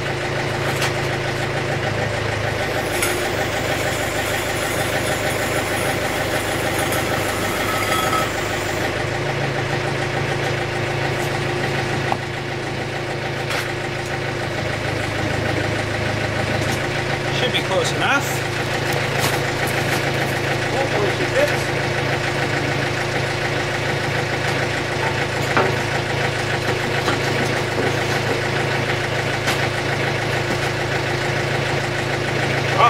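Compact diesel tractor idling steadily while its backhoe hydraulics lift a ripper attachment, the engine note changing for several seconds near the start. A few light metal clinks of the ripper and its pins come about halfway through.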